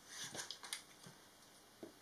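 Faint handling noises of small wooden kit parts: a few soft clicks and rubs of the pieces in the hands in the first second, and one more near the end.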